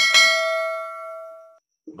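A bell-like notification chime sound effect: one sudden ding with several ringing tones that fade out over about a second and a half. It is the bell sound of a YouTube subscribe-button animation.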